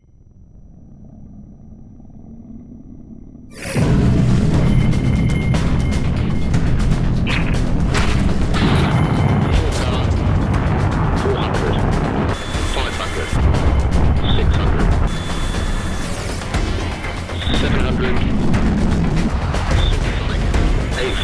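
Sound-designed jet and rocket engine firing: a low rumble builds, then about four seconds in a sudden loud roar sets in and carries on, with music over it.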